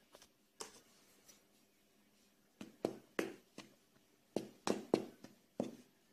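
Short sharp knocks and clicks from handling a mixing bowl of flour as salt is added and stirred in by hand. There is a single tap about half a second in, then two quick clusters of several taps in the second half.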